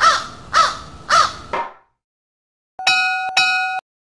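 A crow cawing four times in quick succession, then, about three seconds in, a bell-like notification chime rings twice in about a second.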